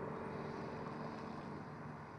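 Audi A7 h-tron, an electric-driven fuel-cell car, driving away: tyre and road noise fading steadily as it pulls off.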